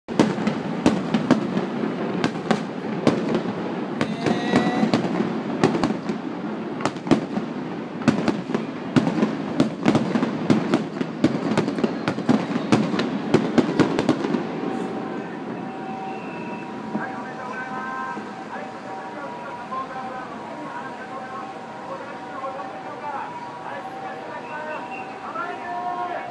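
Fireworks display: aerial shells bursting in a rapid, dense run of bangs and crackles, which stops about fourteen seconds in. Fainter voices and steady tones remain after it.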